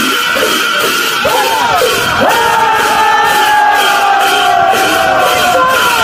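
Music with a steady beat and a held high tone, with a group of voices singing along: one long held note, falling slightly, from about two seconds in until near the end.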